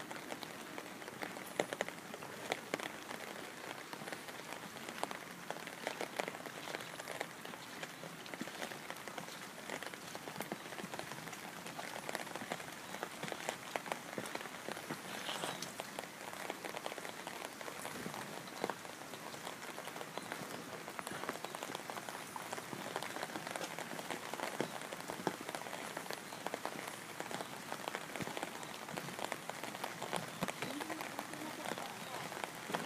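Steady rain falling, a dense patter of small drops.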